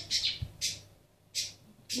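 Pet budgerigars squawking in short, harsh, high-pitched bursts, about three in two seconds.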